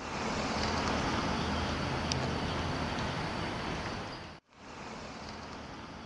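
Steady outdoor traffic noise, an even roadway hum with no distinct events. It cuts off about four and a half seconds in and starts again a little quieter.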